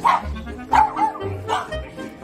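A dog barking several times in short bursts, over background music with a steady low beat.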